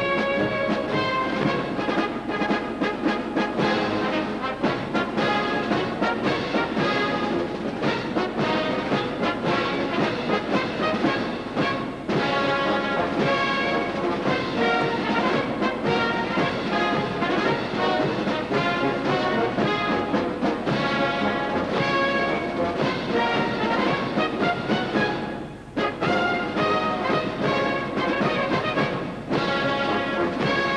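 Military brass band playing, trumpets to the fore over a steady beat. The music dips briefly about three quarters of the way through, then carries on.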